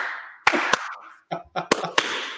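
Men laughing, with several sharp hand claps spread through the laughter.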